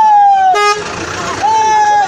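Vehicle horns blaring through a crowd: a long held blast that ends about half a second in, a short lower toot right after it, and another long blast near the end.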